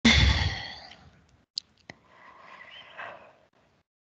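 A person's breathy sigh close to the microphone that starts loud and fades over about a second. It is followed by two faint clicks and a second, softer breath.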